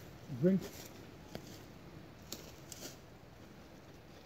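Faint rustling and a few small, sharp clicks as a person handles a jacket hung on a tree, reaching in for a drink.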